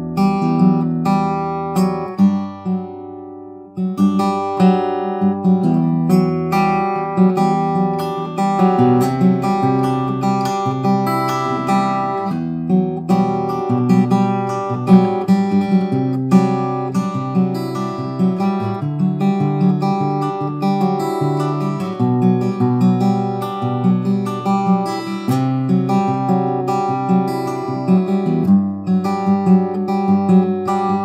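Steel-string acoustic guitar fingerpicked: one chord shape held on the upper strings while the bass note moves under it, giving a series of different chords. A chord rings and fades a couple of seconds in, then a steady flowing picking pattern carries on.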